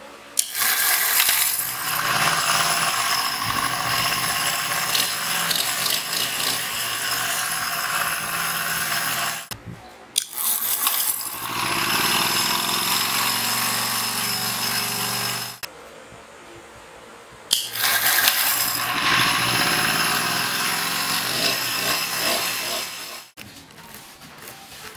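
Small petrol generator engine turned over by a home-made electric starter, a motorcycle starter motor driving it through a bicycle chain and sprocket, in three long runs of several seconds each with short pauses between. The chain and the sprocket's freewheel ratchet clatter loudly throughout.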